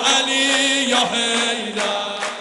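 Amplified male devotional chanting (Persian maddahi) with long held notes, the pitch dipping and settling about a second in.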